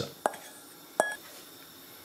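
Two light metal clinks about three quarters of a second apart, the second ringing briefly. A metal pan is knocking against an enamelled pan as cooked mushrooms and onions are tipped into the sauce.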